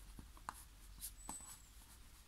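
Faint scratching of a wax crayon stroked over paper, with a few light ticks as the crayon tip meets the sheet.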